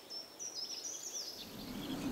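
A small bird chirping: a quick run of short, high notes in the first second or so over faint outdoor ambience. A low noise starts to build near the end.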